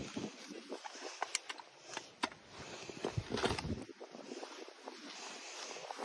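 A digging spade cutting through pasture turf and soil to free a plug, a faint rustling scrape with a few short knocks.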